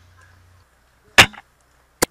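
A single loud shot from the PDI Custom SRT bolt-action airsoft sniper rifle about a second in, a sharp crack with a brief tail, and another short sharp click right at the end.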